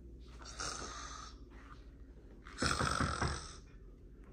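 A man snoring: two long snoring breaths about two seconds apart, the second louder, with a fluttering rattle.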